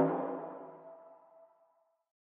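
The final note of an electronic pop mashup ringing out and fading away over about a second and a half, with one tone lingering a little longer than the rest.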